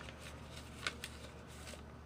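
Small paper slips being handled and put away, giving a few short rustles and clicks, the sharpest just under a second in.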